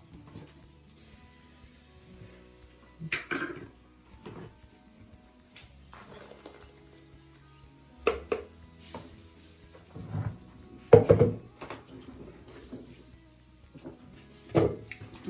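Scattered clinks and knocks of a metal spoon and a plastic blender jar against a sieve and pot while blended acerola pulp is poured and pushed through the strainer, over faint background music.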